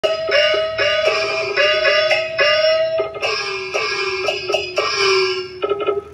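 Traditional Taiwanese opera-style instrumental music accompanying a glove-puppet show: a high melody of sliding notes over short, repeated notes. It thins out and drops away near the end.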